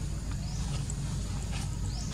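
Outdoor forest ambience: a steady low rumble with a short high rising chirp heard twice, about half a second in and near the end, and a few faint clicks.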